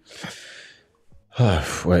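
A man's long, breathy sigh into a close microphone, lasting about a second and fading out: a weary sigh of exhaustion.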